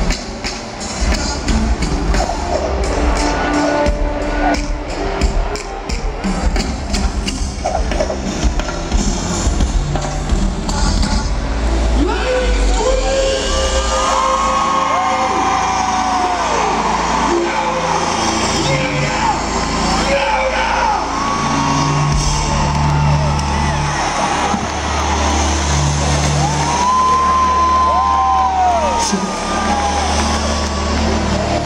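Live R&B band played loud through a stadium PA and recorded from the audience: heavy bass and a drum rhythm, with long held melody notes over it from about halfway through.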